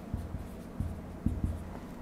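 Dry-erase marker writing on a whiteboard: about five short, uneven strokes and taps as a word is written.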